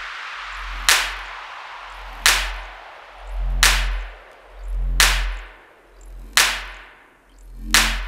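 Drumstep track in a sparse breakdown. A sharp crack with a long fading tail lands about every second and a half, one per bar at 175 BPM, over a deep sub-bass that swells and fades between the hits.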